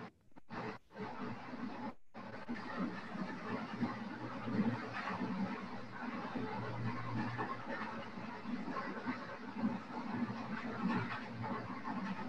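Low background noise picked up by a participant's open microphone on an online-meeting call, with faint indistinct room sounds and no clear words. The audio cuts out briefly three times in the first two seconds.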